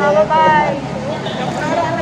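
People talking: voices speaking in a busy room.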